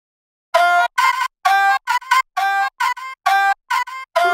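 Trap beat playing back from the DAW: a synth arpeggio of short, chopped staccato notes with silent gaps between them, starting about half a second in.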